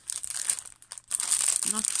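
Clear plastic film wrapped around a rolled embroidery canvas crinkling as it is handled. The crinkling comes in two stretches, with a short break about a second in.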